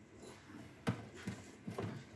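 Quiet handling noise from a refrigerator's freezer cooling coil (evaporator) being moved by hand, with one sharp knock a little under a second in and a lighter one near the end.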